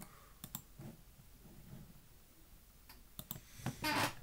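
Scattered clicks of a computer mouse and keyboard, a few at a time, with a louder cluster of clacks near the end.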